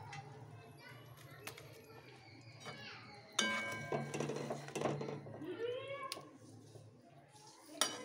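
A metal spatula scraping and clanking in a kadai of simmering fish gravy while it is stirred, loudest in a burst of clatter about three and a half seconds in, with a sharp tap near the end. Children's voices are heard faintly behind it.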